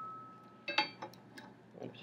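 Light clinks of glass lab equipment being handled: a ringing note from a clink just before fades away, then a second short clink about two-thirds of a second in, as a glass thermometer held in its clamp is fitted into a glass beaker.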